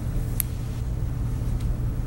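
Steady low background rumble, with a single sharp click about half a second in.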